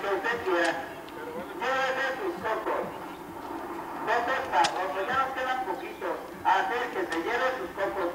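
People talking, with a few sharp knocks of a machete chopping into a coconut.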